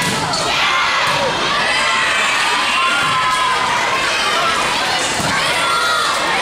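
Many young girls' voices shouting and cheering together during a volleyball rally in a large gym, with a sharp knock near the start and another about a second in.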